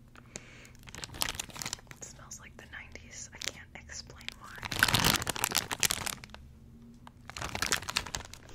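Thin plastic toy bag crinkling and tearing right at a microphone, in quick crackles, with the loudest and densest rustling about five seconds in.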